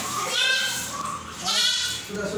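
A young goat kid bleating twice, two high, wavering calls about a second apart.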